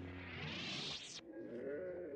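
A lightsaber's low hum dies away with a rising hiss that cuts off sharply about a second in as the blade is switched off. A creature's wavering moan follows.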